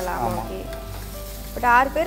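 Prawn thokku sizzling as it fries in a stainless-steel kadai, stirred with a perforated steel spoon. A voice cuts in briefly near the start and again near the end.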